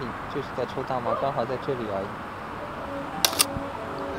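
People talking for about the first two seconds, then two sharp clicks in quick succession about three seconds in, from the Mamiya RB67 medium-format camera's mechanism.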